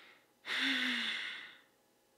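A woman's sigh: a short breath in, then about half a second in a loud breathy breath out with a little voice sliding down in pitch, fading away over about a second.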